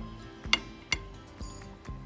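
A metal spoon clinks twice against a bowl, two sharp clicks about a third of a second apart, with background music playing underneath.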